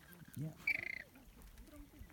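A flamingo giving one short, high call about two-thirds of a second in, one of a series of similar calls from the flock.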